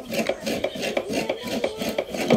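A coconut half being scraped against a hand grater, a run of quick rasping strokes about four or five a second.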